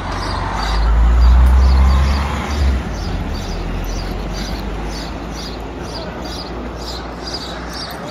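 A motor vehicle passing close by on the road, its low rumble swelling and fading over the first three seconds, followed by a steady wash of outdoor noise.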